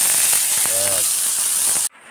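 Red roselle leaves (tengamora) sizzling in hot oil in a metal wok, a steady hiss that cuts off abruptly just before the end.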